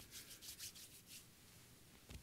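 Faint rubbing of hands together, about half a dozen quick scratchy strokes in the first second or so.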